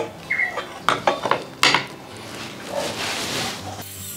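Light metallic clicks and clinks as a small metal square is set against a Festool plunge-cut track saw and its blade to check it is square, with a brief ring early on. A soft hiss follows in the last second or so.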